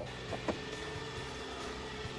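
Faint steady low hum, with one soft click about half a second in.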